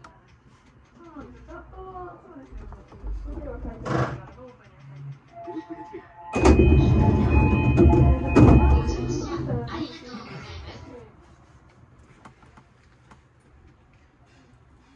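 Station platform public-address audio at a stopped train: a voice for the first few seconds. About six seconds in, louder music with held tones starts, typical of a platform melody or chime, and stops about five seconds later.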